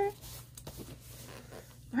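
Faint rustling of fingertips pressing and smoothing a paper sticker strip onto a notebook page, with a few soft ticks, over a low steady hum.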